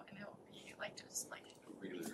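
Faint, low voices talking quietly, close to a whisper.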